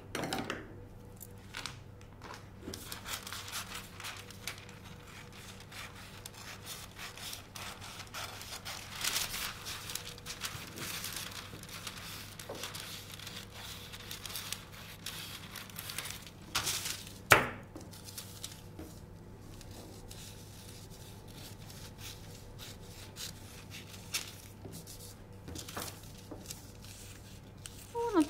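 Scissors cutting through thin tracing paper: a run of irregular snips and paper rustles. A single sharp knock about seventeen seconds in is the loudest sound.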